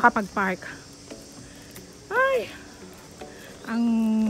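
A steady, high-pitched insect chorus in the background. A woman's voice trails off just after the start, makes one short vocal sound in the middle, and speaks again near the end.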